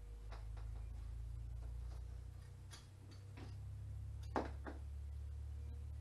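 Steel dimple dies being squeezed together in a small bench vise and handled to dimple a small aluminium part: scattered metal clicks and taps, the loudest a sharp click a little over four seconds in with a second just after, over a steady low hum.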